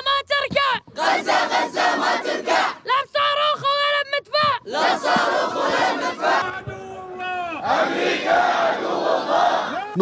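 A boy shouting a defiant statement in Arabic into microphones in short, high-pitched phrases, with a crowd of voices shouting around him, the crowd filling more of the second half.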